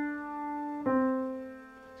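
Grand piano, right hand alone: a held note fading, then about a second in a single lower note is struck and left to ring and die away. It is the closing step down to middle C that ends the beginner's piece.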